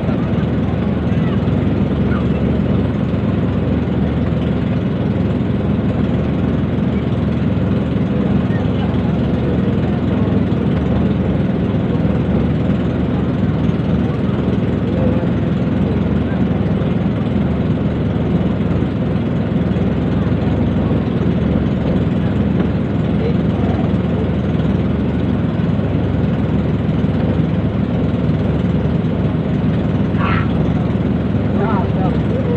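A motor engine running steadily at an even idle, a constant low hum, with people's voices in the background.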